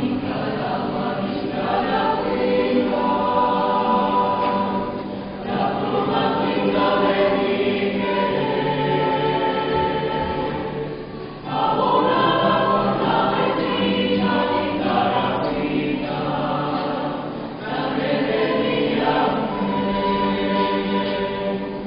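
Mixed choir of men's and women's voices singing a Spanish-language song in phrases, with brief dips between phrases about every six seconds.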